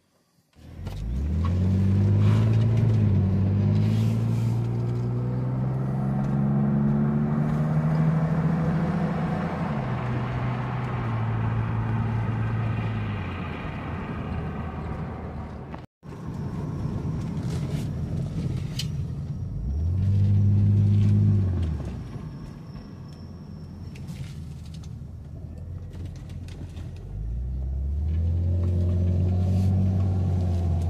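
A 1999 BMW Z3's engine pulling the car along on a road test, heard from inside the cabin. Its pitch rises and falls as the car accelerates and shifts. The sound cuts off abruptly about halfway through, then comes back with two more surges of acceleration.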